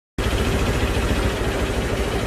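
A steady low rumble with a constant hum, the kind an idling engine makes, cutting in abruptly at the very start.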